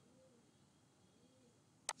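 Near silence: room tone, with a single sharp click near the end.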